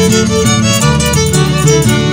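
Andean zapateo played on violins over harp accompaniment: the violins carry a lively melody above a steady plucked bass line.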